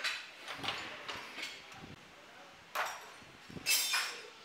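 Short, scattered clanks and scrapes of hand tools against metal engine parts, about five in four seconds, the loudest a sharp scrape near the end.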